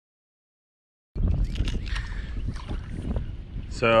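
About a second of silence, then wind rumbling on the microphone over the wash of water around a small fishing boat on a river.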